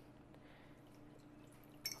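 Faint trickle of water poured from a glass measuring cup into the base of a stainless steel roasting pan, with a short click near the end.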